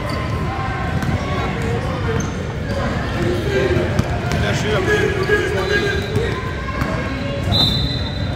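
Basketball dribbled on a hardwood gym floor during a game, with the voices of players and spectators throughout.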